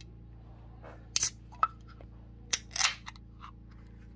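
A few sharp clicks and short bursts of rustling noise, clustered in the middle second or two, over a steady low electrical hum.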